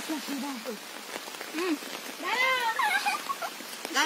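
Heavy rain falling on flooded pond water, a steady hiss, with a few short high-pitched vocal calls over it, the loudest a little past the middle.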